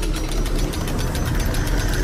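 Sound-effect of a heavy steel vault door's locking mechanism working: a low mechanical rumble with rapid ratcheting clicks as the bolts and clamps move.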